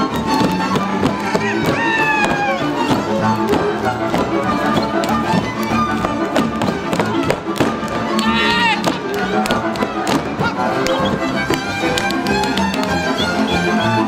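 Hungarian village folk dance music played by a live string band led by fiddle, with the dancers' boots stamping and slapping sharply in time. Voices call out twice, about two seconds in and past the middle.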